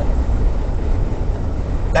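Steady low rumble of road and engine noise inside a moving Jeep's cabin while driving.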